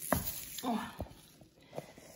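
A few soft knocks and rustles of a phone being handled close up while it films a plastic bowl of cucumbers, with a short murmured sound from a woman's voice about halfway through.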